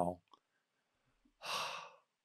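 A man's single audible breath, a short airy sigh of about half a second near the end, after a pause in his speech.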